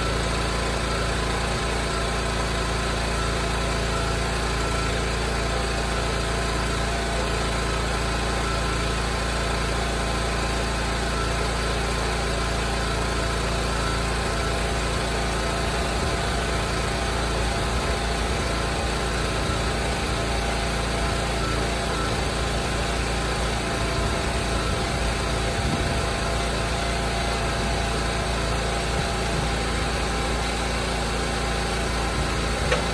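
The gas engine of an Eastonmade Ultra hydraulic log splitter running steadily.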